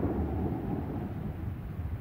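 A low rumble with no clear pitch that fades steadily away.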